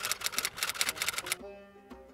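Typewriter key-clicking sound effect, a rapid run of clicks that stops about a second and a half in, followed by a faint held musical chord.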